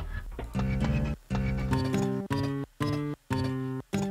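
Sampled concert guitar played in a software sampler: a handful of single notes, one after another, each ringing briefly with short silences between. The sample mapping and envelopes are not yet set up, so the notes sound a little off.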